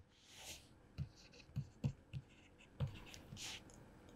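Faint handwriting with a pen: a few light taps of the pen tip and a couple of short scratching strokes.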